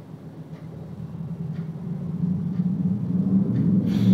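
Steady low background rumble that grows louder, with faint ticks about once a second.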